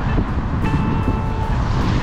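Background music with held notes over the noise of a car driving along a wet street.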